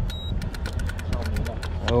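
Boat engine idling as a low, steady hum, with a quick run of light clicks, about seven a second, over most of the two seconds; a man's short 'oh' comes at the very end.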